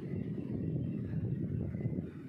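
Low, uneven rumbling outdoor background noise with no clear single source.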